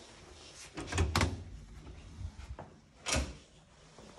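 A flat's room door with an electronic key-card lock and lever handle being opened: two sharp latch clicks about a second in, then a louder thud of the door just after three seconds.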